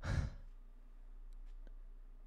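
A man sighs once, briefly, into a close microphone. After it there is only faint room tone with a few soft clicks.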